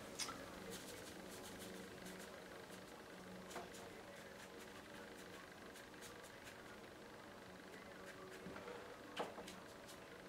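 Quiet room tone: a faint steady hum with a few scattered soft ticks and clicks.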